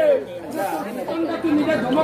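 Voices chattering in a large open gathering after the music stops, with a held sung note falling away at the very start.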